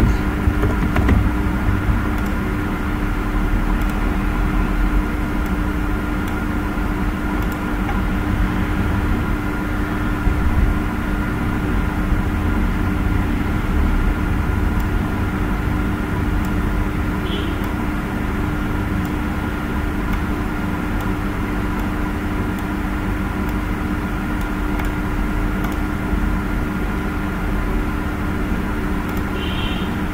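A steady mechanical hum with a few held tones in it, unchanging throughout.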